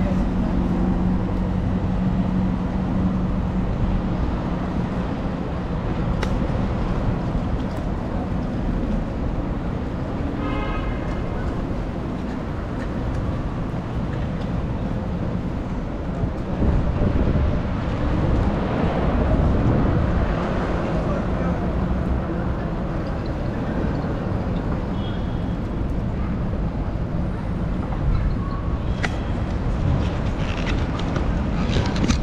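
City street traffic: a steady rumble of road noise with vehicles passing, a low engine hum in the first few seconds, and a short pitched tone about ten seconds in.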